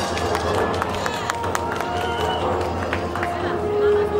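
Crowd murmur with several sharp slaps and stamps from a boy's kung fu routine, bunched in the first half.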